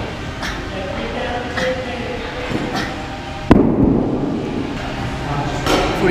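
A single heavy thud about halfway through, the loudest sound here, over gym room noise with faint voices or breathing.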